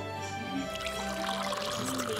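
Background music with steady tones, and a drink being poured into a cup as a hiss of running liquid.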